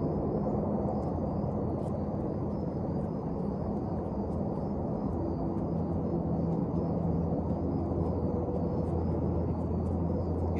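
Steady low outdoor background rumble with faint drifting hum, and a faint high steady trill throughout.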